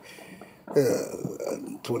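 A man's voice: after a short pause, a long, low hesitant "uhh" begins about two-thirds of a second in.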